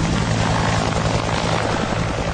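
Bell UH-1 'Huey' helicopter flying past, its two-bladed main rotor making a fast, even chop over the steady turbine sound.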